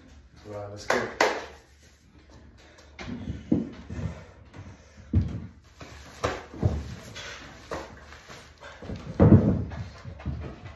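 A man breathing hard in short, irregular exhalations and vocal sounds between lifting sets, with a brief voiced sound about a second in and the loudest breath near the end.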